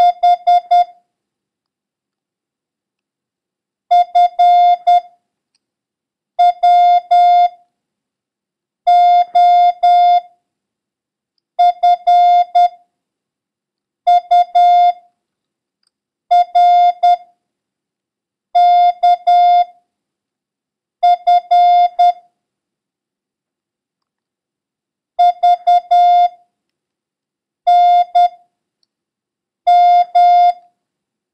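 Morse code practice tones: a single steady-pitched beep keyed on and off in dits and dahs, sending one letter or number roughly every two and a half seconds for copying by ear, with a longer pause about two-thirds of the way through. The run is heavy in the letters F, B and H.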